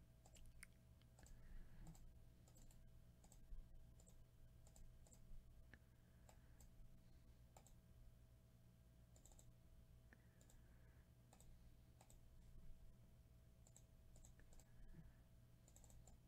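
Near silence with faint, scattered clicks of a computer mouse and keyboard, about one a second.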